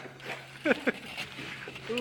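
A man's voice: two short vocal sounds about two-thirds of the way in, with a few faint clicks around them.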